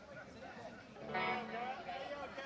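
A woman laughing through the stage PA about a second in, with electric guitar sounding as well.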